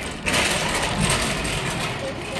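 Wire shopping cart rattling as it is pushed along, a steady clattering noise that gets louder a moment in.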